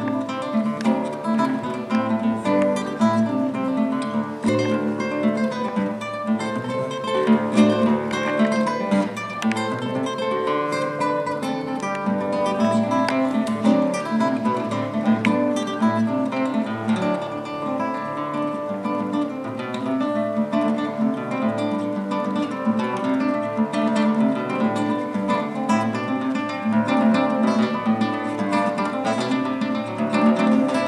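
Classical guitar played solo with the fingers: a continuous flow of quick plucked notes over a steady bass line.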